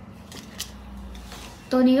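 Faint rustling of a light fabric blouse being lifted and shaken out, with a few soft ticks of handling. A woman starts speaking near the end.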